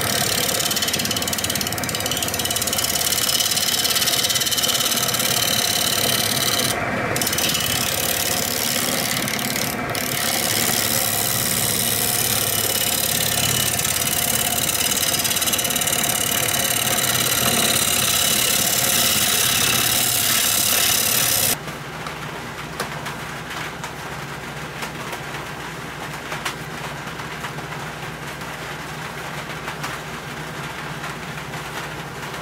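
Wood lathe spinning a cherry platter blank while a bowl gouge cuts into it, a steady loud cutting hiss over the lathe's running. About two-thirds of the way through, the cutting stops abruptly and only a quieter steady machine hum with faint ticks remains.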